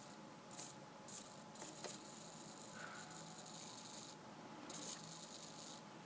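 Micro hobby servo buzzing faintly in on-off stretches of about a second, with a few light clicks, as its arm moves and jitters. The buzz is the servo's vibration that the owner is trying to track down.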